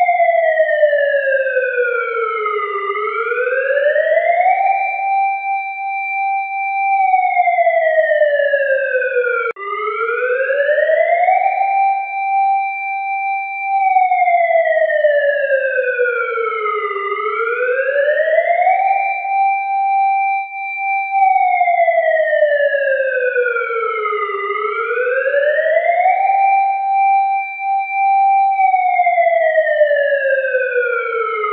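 A single synthesized electronic tone gliding slowly down about an octave and back up, holding at the top for a couple of seconds, in a cycle that repeats about every seven seconds; it jumps abruptly back to its low point about nine and a half seconds in, like a restarting loop. It is a background track laid over the footage.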